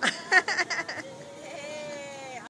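A spectator's voice reacting to the fire show: a sudden shout that falls in pitch, then a quick run of laughing, then one long held call.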